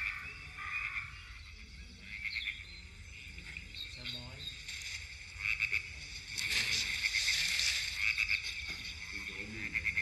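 A recording of a frog chorus croaking, played back over loudspeakers. It swells louder about six and a half seconds in.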